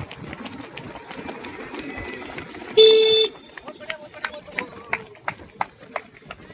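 Footfalls of a pack of runners on a dirt track, heard as irregular short thuds as they pass close by. Near the middle comes a single loud, steady horn blast about half a second long.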